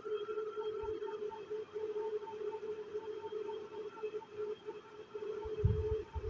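A steady low hum with a fainter tone above it that pulses about three times a second. A short low bump near the end.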